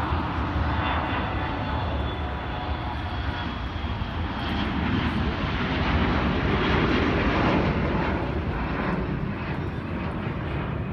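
Boeing 737-800 jet engines (CFM56-7B) running as the airliner rolls along the runway after landing: a steady rushing noise that swells about halfway through and eases off near the end.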